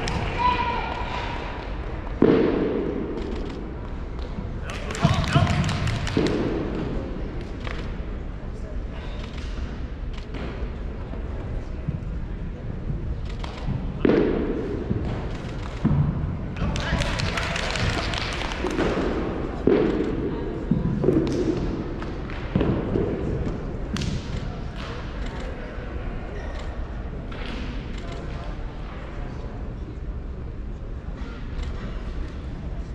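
Stamps, jump landings and falls of a changquan wushu routine thudding on a carpeted competition floor: about a dozen irregular thumps, several in quick pairs, over the murmur of voices in a large hall.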